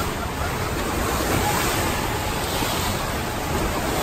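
Steady rushing noise with a low rumble while riding an open monorail car: wind across the microphone over the train's running noise.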